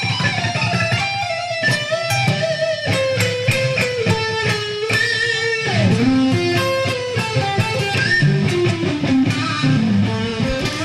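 Electric guitar playing a fast rock lead line of quick single notes, with a pitch slide down a little past the middle.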